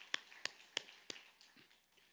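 Congregation clapping in a steady rhythm, about three claps a second, in praise. The claps stop a little over a second in and the sound dies away.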